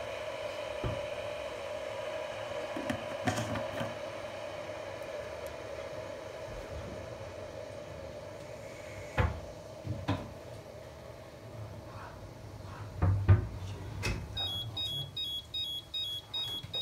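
Arzum Okka Minio Turkish coffee machine heating its brew toward the boil: a steady hum over a light hiss, with a few sharp clicks after the middle. Near the end comes a quick series of short high electronic beeps, the machine signalling that the coffee is ready.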